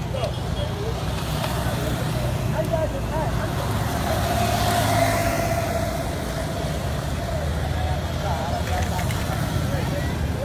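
Street traffic: a steady low rumble of motor vehicles, swelling about halfway through as a vehicle passes.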